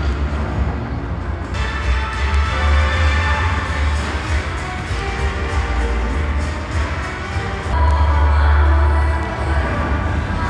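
Background music with a heavy, steady bass, swelling louder near the end.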